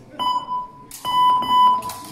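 An electronic beeper sounding two steady, high beeps of under a second each, the second louder.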